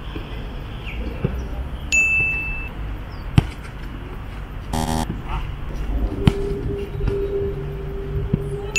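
Soccer balls being kicked on grass, heard as sharp thuds, the loudest about three and a half seconds in. A bright chime sound effect rings about two seconds in, marking a successful pass. A short buzz near the middle and a steady low tone in the second half are also present.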